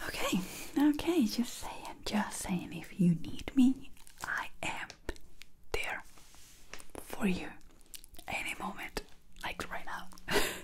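A woman whispering close to the microphone in short phrases with brief pauses.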